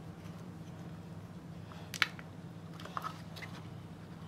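Small handling noises of a plastic phone jack wall plate and its wires being worked by hand: one sharp click about two seconds in and a few softer ticks about a second later, over a steady low hum.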